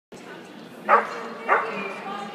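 A dog barks twice, about half a second apart, over background chatter of people talking.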